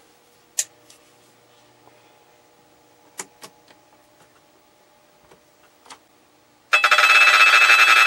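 A few sharp clicks as the CRT analyzer's rotary selector switch is turned through its positions. About seven seconds in, a loud pulsing buzz lasting about a second and a half: a handheld electric vibrator pressed against the CRT's glass neck, shaking the tube to free its electrodes and coax emission from a dead cathode.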